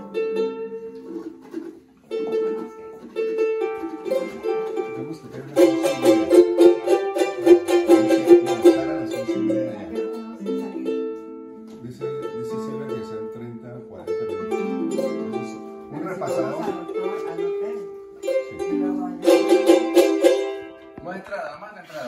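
Several small guitars strummed together in a lively rhythm, with voices singing along. The strumming swells louder and busier in a few passages.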